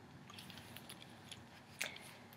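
Faint rustling and light ticks of a tweed top and its paper price tag being handled and turned around, with one short louder sound near the end.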